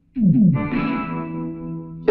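Background film score: an electric guitar with distortion and effects enters after a brief silence with a quick falling glide, then rings on a sustained held tone.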